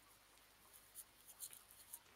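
Near silence: room tone with a few faint, brief rustles or clicks about a second in, around a second and a half, and near the end.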